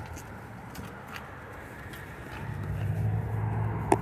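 Outdoor lot ambience with a low steady hum that swells from about halfway, then a single sharp click near the end as the SUV's rear door latch is pulled open.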